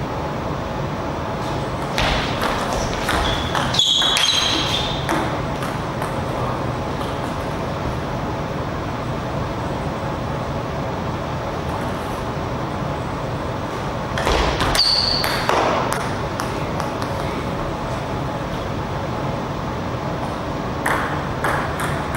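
Table tennis ball clicking off rackets and the table in short clusters, about two seconds in, around fifteen seconds in and again near the end, with a couple of brief high squeaks, over a steady hall hum.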